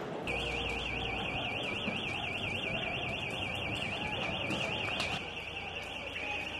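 An electronic alarm sounding a high, fast-warbling tone, about five wobbles a second, starting just after the opening, over steady background street noise.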